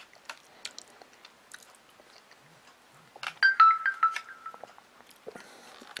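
Quiet eating sounds: a metal spoon clicking and scraping in a plastic yogurt cup, with mouth sounds of tasting. A little over halfway through comes a louder stretch with a short, high squeak.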